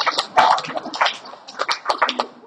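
Scattered hand claps from a congregation, irregular and uneven, with a couple of brief voices or exclamations among them.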